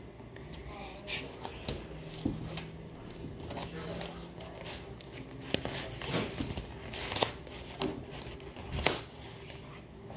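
A pack of flipbook paper being torn and crinkled open by hand: scattered rustles and sharp snaps of packaging.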